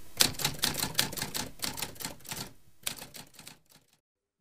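Quick, irregular typing clicks like typewriter keys, an intro sound effect; they thin out and stop shortly before the end.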